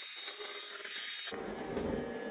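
Shark ION RV754 robot vacuum running as it heads back to its dock: a faint steady hiss from its suction fan with a thin high whine. About a second and a half in, the sound changes abruptly to a duller, lower background.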